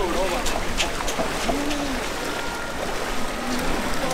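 Feet wading through shallow floodwater, sloshing and splashing, with a few sharper splashes in the first second. Indistinct voices in the background.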